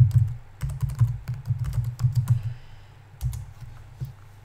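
Typing on a computer keyboard, very loud with the microphone on the same desk: quick runs of keystrokes, a pause about two and a half seconds in, then a last short run.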